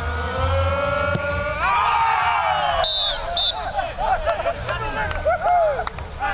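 A group of footballers shouting and cheering in celebration, starting with long drawn-out yells and turning into many short excited shouts. About three seconds in, a whistle gives two short blasts.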